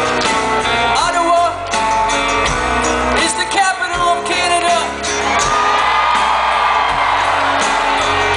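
Live rock band playing, acoustic and electric guitars with a singing voice, heard from the audience.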